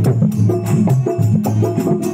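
Instrumental passage of a devotional bhajan: a keyboard plays a moving low melody, over steady fast clicking percussion struck with sticks.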